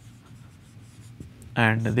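Marker pen writing on a whiteboard: faint short strokes as a word is written, with a man's voice starting near the end.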